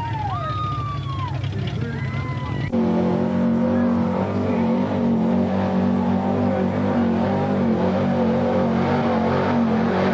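Rising and falling whistling tones over a low engine hum, then, after an abrupt change about three seconds in, a mud-bog vehicle's engine running loud at high, steady revs as it drives through the mud pit.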